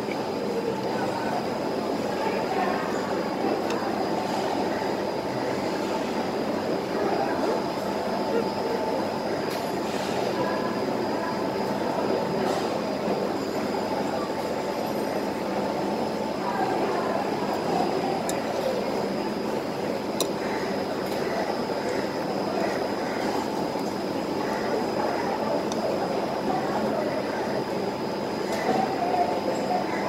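Steady background din of a busy hawker food centre: indistinct crowd chatter over a constant mechanical hum, with a few faint clinks of cutlery.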